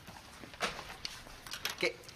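A few brief papery rustles and light knocks as sheets of paper are handled, followed by a short spoken "OK" near the end.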